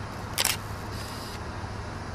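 A single camera shutter click about half a second in, over the steady low rumble of a car's interior.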